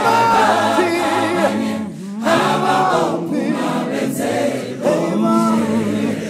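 Choir singing a gospel song in several-part harmony, in long held phrases, with short breaks about two seconds in and again just before five seconds.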